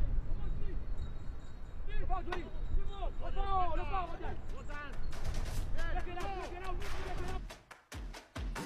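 Voices calling out over a steady low rumble, with music coming in about five seconds in.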